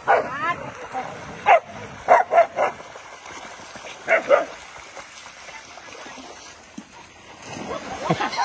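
Dogs barking and yipping in short, sharp barks, bunched in the first half, over a steady wash of water splashing.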